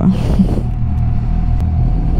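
Motorcycle engine idling steadily, heard from the rider's helmet camera while the bike is stopped in traffic.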